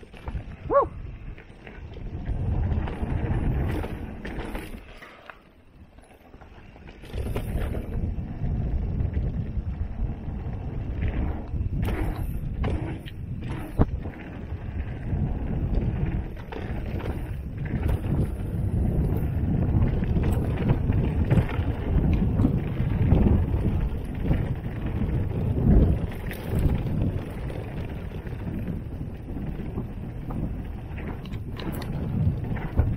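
Mountain bike descending a dirt trail: a steady low rush of wind on the microphone mixed with tyre noise on dirt, with sharp rattles from the bike over bumps. It drops quieter for a couple of seconds about five seconds in, and there is a short squeak near the start.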